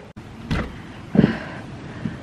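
Hard rain falling steadily, with a sharp knock about half a second in and a heavier thud just over a second in.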